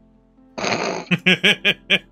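A person laughing: a breathy burst about half a second in, then a run of quick 'ha' pulses, about five a second.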